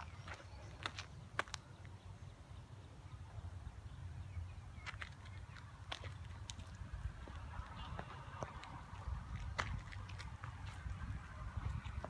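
Outdoor ambience while walking on grass: a low rumble of wind on the phone microphone with a few faint, irregular clicks of footsteps or handling.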